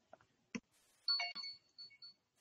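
A faint click, then about a second in a short electronic chime of several stepped tones under one held high tone, like a ringtone or notification sound coming through the conference audio.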